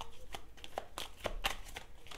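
A deck of cards being shuffled by hand, a quick run of light card snaps and clicks, about four a second.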